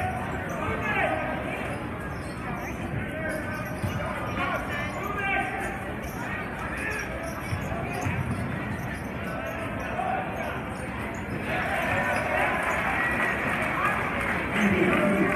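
A basketball being dribbled on a hardwood gym floor, under the steady chatter and shouts of a crowd in an echoing gym. The crowd voices grow louder about eleven seconds in.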